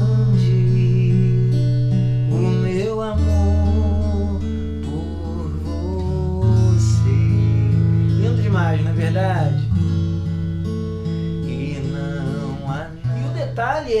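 Steel-string acoustic guitar fingerpicked in an alternating pattern over seventh chords in A major, each bar opening with the bass and three treble strings brushed together in a quick slide before the picked notes. A man sings softly along in places.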